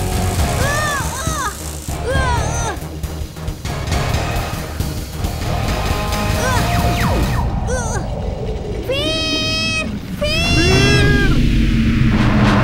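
Cartoon action soundtrack: music over a heavy low rumble from a giant stone wheel rolling, with repeated short high-pitched yelps and cries that rise and fall in pitch. The cries come in clusters, thickest near the end.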